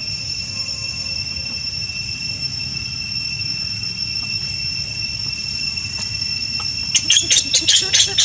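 Insects drone steadily and high-pitched in the background. About a second before the end, a baby macaque breaks into a rapid series of sharp, high-pitched screams, about six a second, as it is separated from its mother.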